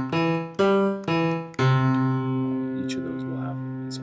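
Studio Grand Piano LE sampled grand piano played from a keyboard: three chords struck in quick succession in the first two seconds, the last one held and slowly fading.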